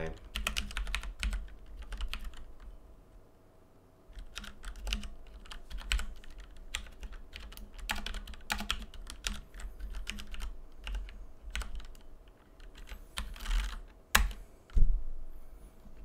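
Typing on a computer keyboard: quick irregular keystrokes entering a calculation, with a pause of about a second and a half a few seconds in and one harder keystroke near the end.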